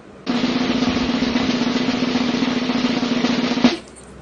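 Snare drum roll sound effect, a fast, even rattle lasting about three and a half seconds that ends on a single sharp hit.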